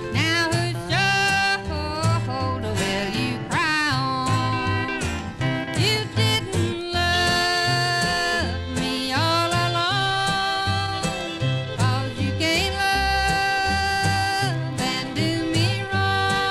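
Country band playing a song, with twin fiddles, steel guitar, upright bass and rhythm guitar, and sliding lead notes over a steady bass line. It is heard from a 1958 16-inch radio transcription disc.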